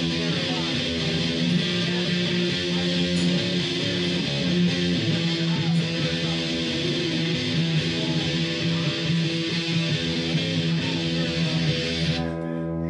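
Electric guitar played through an amplifier, ringing chords held over a steady sustained low drone.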